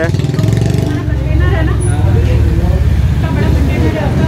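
Road traffic passing close by, car and scooter engines making a steady low rumble.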